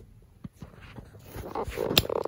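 Small white dog making a short, soft sound that grows louder in the second half after a quiet start, with a sharp click at the very end.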